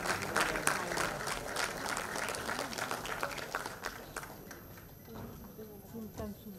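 Audience applauding with a dense patter of claps that dies away about four seconds in, leaving faint voices.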